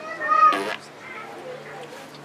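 A single loud, high-pitched cry lasting under a second, its pitch rising and then falling, heard over the low murmur of people talking.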